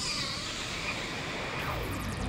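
Cinematic logo-sting sound effect: a dense rushing whoosh with a sweep that falls in pitch, accompanying an animated logo reveal.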